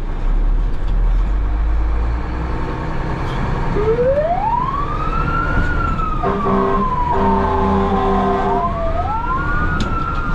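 Ambulance's electronic siren starting about four seconds in with a slow wail, rising and falling twice, with a few horn blasts underneath in the middle, the last held for about a second and a half. Under it runs a steady rumble of engine and road noise in the rain.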